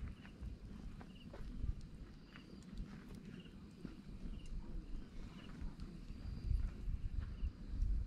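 Wood fire burning in a metal fire pit, with scattered crackles and pops over a low rumble that grows louder after about six seconds. A short, high chirp repeats roughly once a second in the background.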